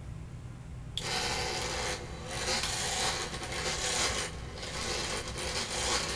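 A small electric motor mounted on a spinning wooden platform switches on about a second in and runs with a steady rasping whir.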